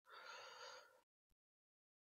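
A man's faint breath in, lasting under a second, followed by a tiny click.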